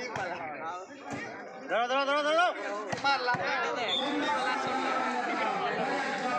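Players and spectators shouting and chattering over one another during a volleyball rally, with one loud rising shout about two seconds in. A few sharp thumps of the ball being struck cut through the voices.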